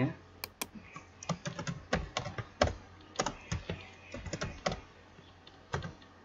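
Typing on a computer keyboard: an uneven run of keystrokes lasting about five seconds as text is entered, stopping just before the end. It opens with two sharper clicks.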